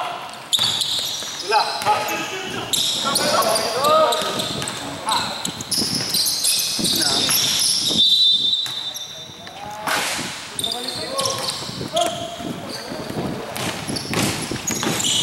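Basketball game on an indoor hardwood court: players shouting and calling to each other, with a basketball bouncing on the floor.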